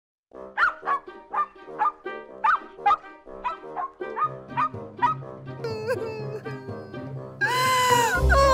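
Short dog barks repeating at about two a second over cheerful background music, fading into sliding musical tones. Near the end a loud held chord sets in, its pitch bending downward.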